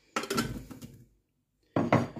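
Pieces of Fleischwurst dropped into a stainless steel Thermomix mixing bowl, clattering and knocking against the metal for just under a second. Another sudden knock comes near the end.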